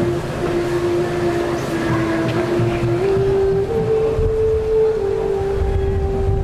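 Outdoor music heard over a rumble of street and wind noise: one long held note that steps up in pitch about halfway through and drops back a little near the end.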